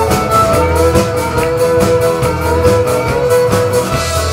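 Live country band playing an instrumental passage: fiddle to the fore over acoustic guitars, accordion and a drum kit keeping a steady beat, with one long held note through most of it.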